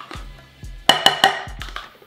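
Background music with a steady low bass pulse. About a second in, three quick sharp knocks with a short ring, a utensil rapping the red plastic measuring cup to shake mayonnaise into the glass bowl.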